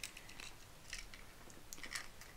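Faint clicks and light handling noise of a small tape measure being pulled taut across a diamond-painting canvas.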